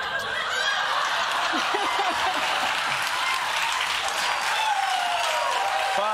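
A studio audience laughing and applauding, a steady wash of clapping with laughter through it.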